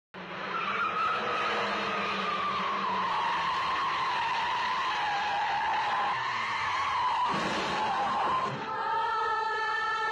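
A car's tyres squealing in one long screech that slowly falls in pitch as the car skids through a bend at speed. A little after eight seconds in it cuts off and gives way to music.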